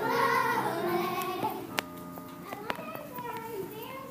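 Children singing with musical accompaniment; the song ends about a second and a half in. Quieter children's voices and a couple of sharp clicks follow.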